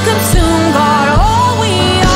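Live worship music: sustained keyboard chords over a low beat, with a voice singing a sliding, held melody.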